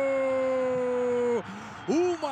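Male football commentator's long, held goal shout, slowly falling in pitch and cutting off about a second and a half in. Ordinary commentary speech starts again near the end.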